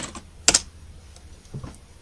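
Computer keyboard and mouse clicks: one sharp click about half a second in, then a few faint ticks.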